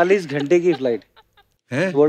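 A man's voice speaking, with a pause of about half a second in the middle before talk resumes.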